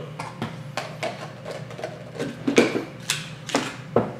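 Kitchen handling sounds on a wooden countertop: a string of light knocks and clinks as a small glass bowl is set down and seasoning containers are picked up, the loudest about two and a half seconds in, over a low steady hum.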